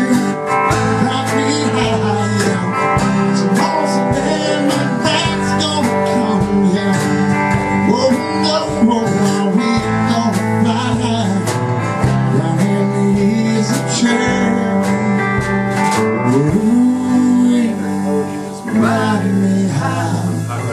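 Instrumental break of a live country-folk song. An acoustic guitar strums steady chords while a second guitar plays a solo line of bending, sliding notes.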